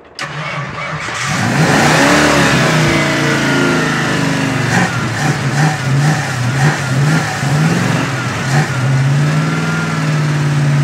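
A carbureted 302 small-block Ford V8 with long-tube headers and Flowmaster mufflers catches and starts suddenly. It runs fast, and its speed wavers up and down as the carburetor's throttle linkage is worked by hand, then it settles into a steady idle near the end.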